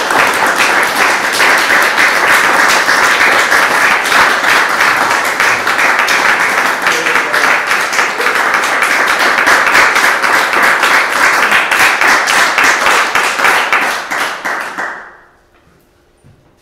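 An audience applauding: steady clapping from many hands that dies away near the end.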